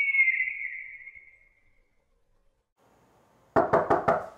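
A bird-of-prey screech sound effect, one high cry that fades out over about two seconds. Near the end a quick run of sharp knocks or clatter.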